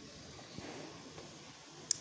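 Faint, steady background noise of a cricket broadcast's audio, swelling slightly about half a second in.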